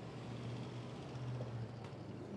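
A low, steady hum under faint room noise, with a soft click near the end.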